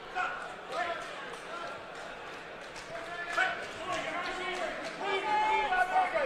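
Shouting voices from ringside during a Muay Thai clinch, loudest near the end, mixed with several dull thuds of knees, strikes and bare feet on the ring canvas.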